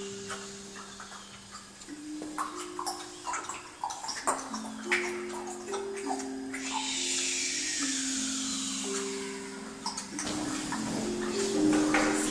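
Handpan played by hand: slow, overlapping ringing notes, with light taps between them. Midway a rushing, water-like noise swells for about three seconds and fades.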